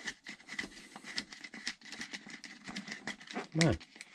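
Irregular light clicks and rattles of a wheel wrench working on the wheel nut of an RC monster truck, with the tyre and hub shifting as a stuck front wheel is worked loose.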